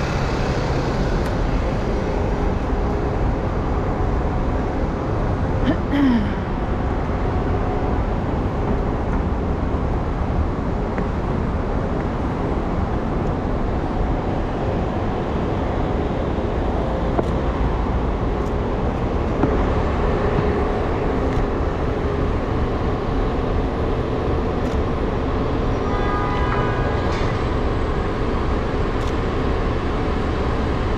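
Steady city street traffic noise, a constant rumble of passing and idling vehicles, with a short click about six seconds in and a brief high tone about four seconds before the end.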